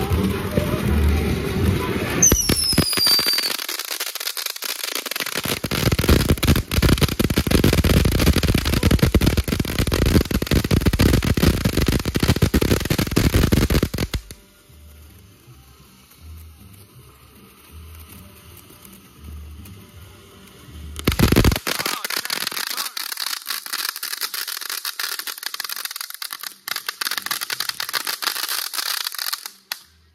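Fireworks going off: a couple of whistles falling in pitch, then about ten seconds of dense crackling. After a lull of several seconds, a second crackling stretch cuts off just before the end.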